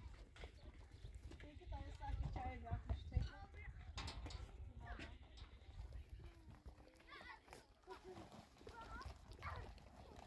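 Lambs and a young goat bleating in short wavering calls, mixed with a person's voice, and a dull thump about three seconds in.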